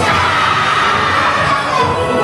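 Loud yosakoi dance music with a group of dancers shouting in unison over it, one long call falling in pitch.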